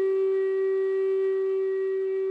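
Native American flute holding one long, steady note.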